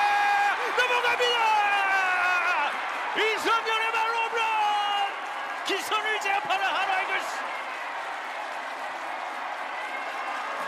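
A broadcast baseball commentator shouting a long, drawn-out home run call over stadium crowd noise. About seven seconds in the voice stops, leaving quieter crowd noise and applause.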